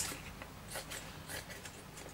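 Scissors trimming wet kitchen towel along the edge of an embossing folder, a few faint, short cuts.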